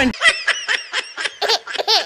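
High-pitched laughter: a quick run of short 'ha' bursts, about five a second.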